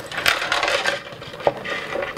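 Hands rummaging through a handbag with a metal frame and chain: rustling and scraping with light metallic clinks, and a sharp click about a second and a half in.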